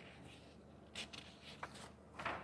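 Faint rustling and light ticks of paper sheets being handled, as one sheet of paper on a desk is slid away and replaced by the next, about a second in and again near the end.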